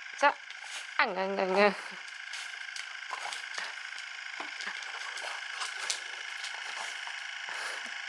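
A vibrating facial cleansing brush runs with a steady high hum. A dachshund gives a short yelp just after the start and then a howl about a second in that drops sharply in pitch and wavers.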